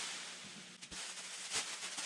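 Thin automotive masking plastic sheeting rustling and crackling as it is pulled and spread over a car, softer at first, with a quick string of sharp crackles from about a second in.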